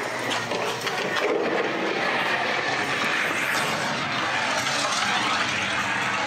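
Steady noisy rumble of a dark-ride car rolling along its track through the ride building.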